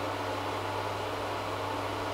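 A steady low hum with an even hiss over it, unchanging throughout, with no distinct clicks or knocks.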